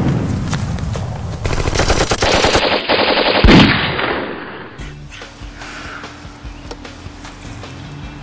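Machine-gun fire sound effect: rapid bursts of automatic gunfire in the first few seconds, with the loudest blast about three and a half seconds in, then dying away.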